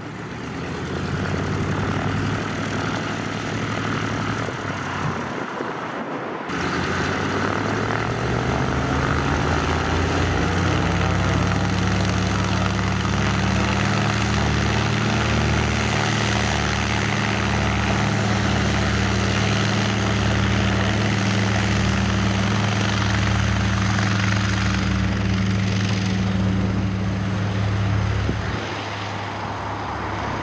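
Douglas DC-3 Dakota's twin radial piston engines and propellers opening up to takeoff power about six seconds in, their pitch rising over several seconds. They then run steadily at full power through the takeoff roll, falling off near the end as the aircraft moves away.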